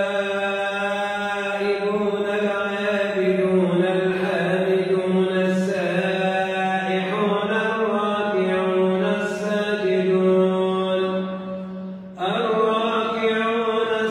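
An imam's melodic Quran recitation: a single male voice drawing out long held, ornamented notes, with a short pause for breath about twelve seconds in.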